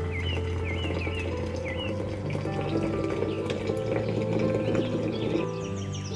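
Background music with long held notes, with a few short bird-like chirps in the first two seconds.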